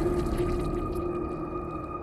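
Eerie film-score drone: several held tones, one low and others higher, sustained together and slowly fading.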